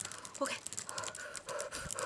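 A woman panting, with quick breathy gasps and short voiced catches of breath.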